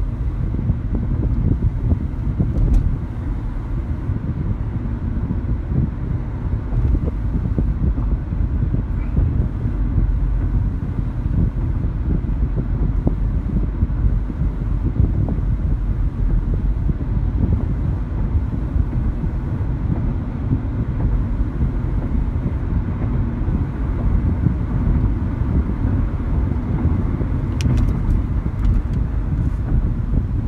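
Steady low rumble of road and engine noise inside the cabin of a 2012 Nissan Sentra 2.0 driving at about 35 to 45 mph.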